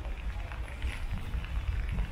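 Steam locomotive approaching at a distance, its exhaust beats heard as a loose series of strokes over a steady low rumble.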